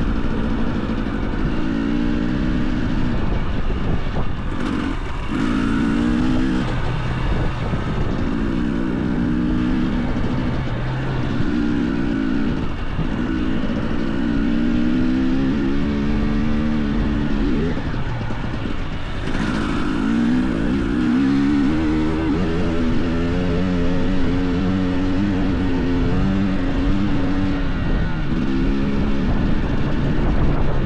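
Two-stroke enduro motorcycle engine heard from the rider's seat, its pitch rising and falling again and again as the throttle is opened and rolled off. Two brief bursts of hiss come about five and nineteen seconds in.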